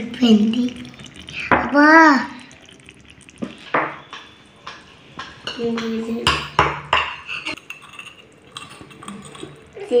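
Miniature clay and steel toy pots, lids and utensils clinking and knocking as they are handled, in a string of sharp clicks through the second half. A child's voice is heard twice, a short rising-and-falling sound about two seconds in and more around six seconds.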